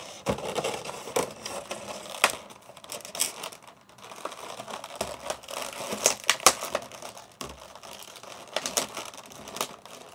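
Thin clear plastic blister tray of a toy package being handled and worked at, crinkling and crackling with many sharp snaps and clicks; the tray is taped shut and is being pulled open against the tape.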